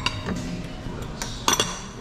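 Plates and cutlery clinking on a table: a short clink at the start and a louder clink that rings briefly about a second and a half in.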